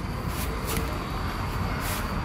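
Steady background noise with a low rumble, of the kind made by vehicle traffic, with a few faint clicks.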